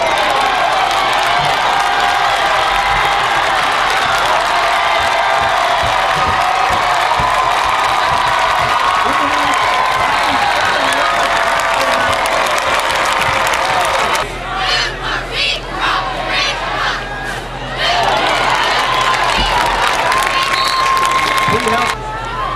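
Football stadium crowd cheering and shouting loudly for a long running play; it drops off for a few seconds past the middle, then swells again near the end.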